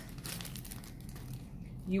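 Clear plastic zipper bag holding a paper card, crinkling quietly as it is picked up and handled.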